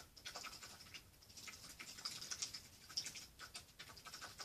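Faint, irregular scratching and light clicking, the sound of close-up handling and rustling next to the microphone.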